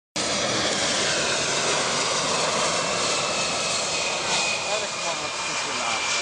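Boeing 747 jet engines passing low on approach: a loud, steady roar with a high whine riding on it that sinks slightly in pitch.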